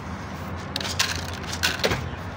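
Dry cat kibble rattling as it is poured from a plastic container into a plastic bowl, in two short bursts about a second apart.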